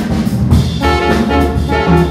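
Live small-group jazz: trumpet, tenor saxophone and trombone playing held notes together over electric guitar, double bass and drum kit. The horns thin out briefly, then come back in together a little under a second in.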